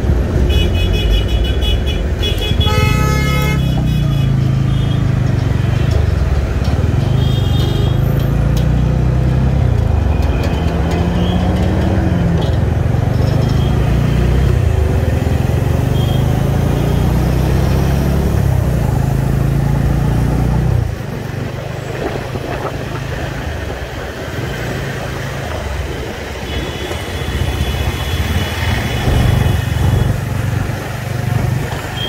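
Busy road traffic heard from a motorcycle: a heavy, low engine rumble that drops away about two-thirds of the way through, with other vehicles' horns honking over it. There are short toots near the start, a louder horn blast about three seconds in, another around eight seconds, and a longer honk near the end.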